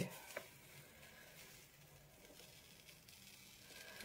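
Near silence: faint rustle of fingers rubbing a paper print against a gel plate, with a single soft tick about half a second in.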